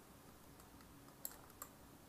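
Near silence with three faint, short clicks from computer controls in the second half: the first the loudest, the next two close together.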